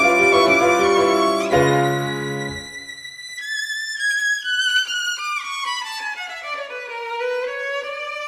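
Violin and piano playing an instrumental passage of late-Romantic art song. The piano's low sustained chords die away after about two and a half seconds, leaving the violin alone in a long, slowly descending melodic line.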